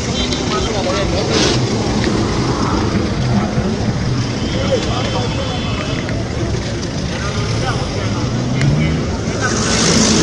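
Busy roadside traffic noise, vehicles running past steadily with people talking in the crowd; a vehicle passes close near the end, the loudest moment.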